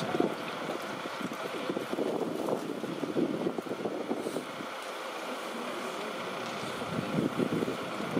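Steady wind noise on the microphone, with irregular low buffeting over an open-air rush.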